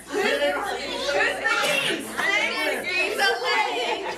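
Many people in a large room talking and calling out over one another at once.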